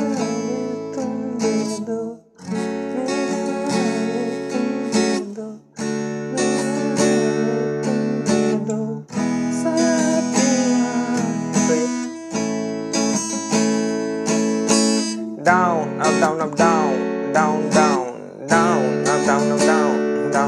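Steel-string acoustic guitar strummed through the song's chord loop of A, F#m, D and E, with brief breaks at chord changes. A man's voice sings the melody along at times, most clearly in the last few seconds.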